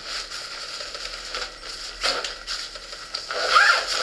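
Zipper being pulled along a nylon backpack pocket, with the fabric rustling as it is handled; short rasps about halfway and a longer one near the end.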